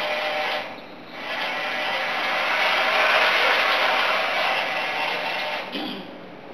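Electric drive of a laboratory crane model running as it moves its trolley and suspended load: a steady mechanical noise that dips briefly just before one second in, swells to its loudest a few seconds in, and fades near the end.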